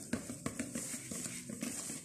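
A utensil stirring thick cake batter in a plastic bowl: soft, irregular taps and scrapes.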